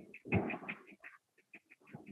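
Faint, quick high chirps repeating several times a second, like a small bird in the background, with a short muffled sound about half a second in.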